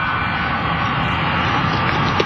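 Steady aircraft engine noise, an even rushing drone.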